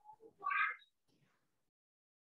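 A single brief high-pitched vocal call, under half a second long, about half a second in.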